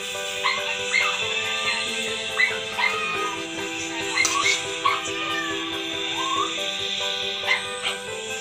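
Background music of held notes that change in steps, with short high rising yips recurring about once a second.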